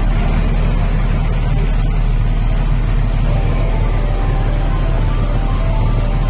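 A bus engine running with a steady low rumble, while music plays over it.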